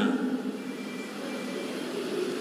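A pause in a man's amplified speech: steady background noise of the hall and its public-address system, with a faint thin high tone for about a second in the middle.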